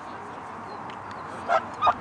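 A dog barking twice, short high barks about a third of a second apart near the end, over steady open-air background noise.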